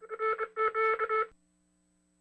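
A quick run of about four electronic beeps at one steady pitch, ending about a second and a quarter in, over a faint steady hum.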